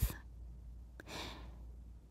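A woman takes a single soft intake of breath about a second in, lasting about half a second, with a faint mouth click just before it. Otherwise only faint room tone.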